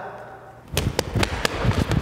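A quick run of sharp thuds, about six in just over a second, starting about three-quarters of a second in after a quiet moment.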